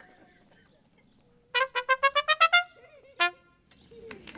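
Solo trumpet playing a short flourish: a quick run of about seven short notes climbing in pitch, then a single lower note about half a second later.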